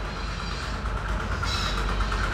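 Steady low hum and rumble of background machinery, getting slightly louder near the end.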